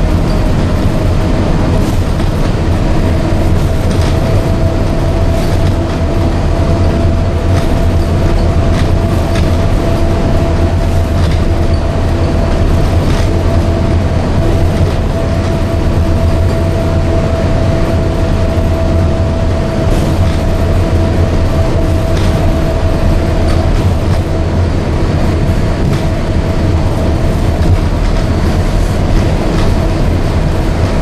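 Walt Disney World monorail running at speed on the EPCOT line, heard from inside the cabin: a steady low rumble with a steady whine over it that fades near the end, and occasional faint clicks.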